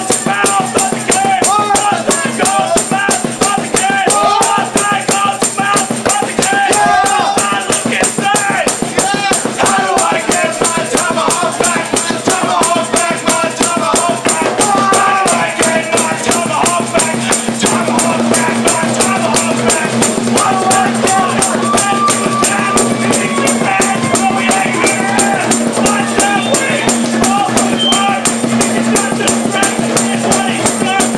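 Live punk-rock band playing a song: acoustic guitar and a fast, steady beat, with a man shouting the vocals. The singing is heaviest in the first half while the playing carries on throughout.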